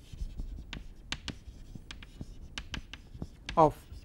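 Chalk writing on a chalkboard: an irregular run of short taps and scratches as words are written.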